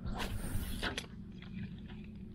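Handling noise as a fishing rod is picked up and swung in a small skiff. There is a brief rustling swish, then a sharp click about a second in and a few faint ticks, over a low steady rumble.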